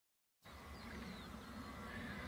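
Dead silence, then about half a second in a faint open-air field ambience begins: a low steady rumble with a few faint high chirps.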